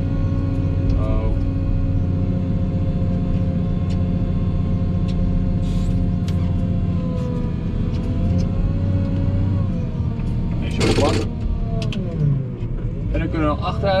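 Volvo wheel loader's diesel engine running under load, heard from inside the cab, its pitch sagging and rising a few times as the machine drives and pushes. A short, loud burst of noise comes about eleven seconds in.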